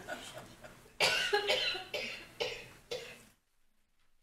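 A person coughing several times, starting about a second in, with faint voices before; the sound then cuts out to silence shortly before the end.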